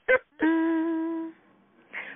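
A woman humming a long 'mmm' on one steady pitch for about a second.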